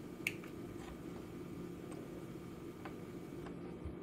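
A Philips Hue Dimmer Switch V2 button being pressed: one sharp click about a quarter second in, followed by a few faint ticks, over a low steady hum.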